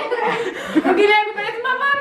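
Excited voices laughing and chattering, with chuckles running through.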